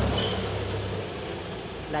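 Road vehicle passing, a low engine rumble that dies away about a second in, leaving a steady hiss of road noise.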